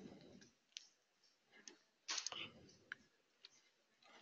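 Near silence broken by a few faint, scattered computer mouse clicks, the loudest a little past halfway.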